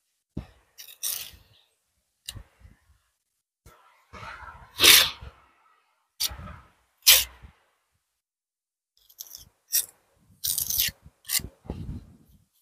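Steel pointing trowel scraping and pressing mortar into the joints of a brick wall: a series of short, irregular scrapes, the loudest about five seconds in.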